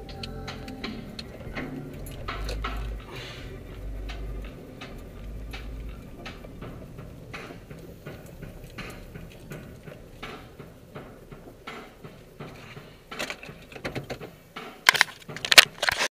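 Inside a Honda's cabin, music from the car stereo stops about a second in. A steady light ticking follows at about two a second. Near the end come loud knocks and rustles as the dash camera is handled.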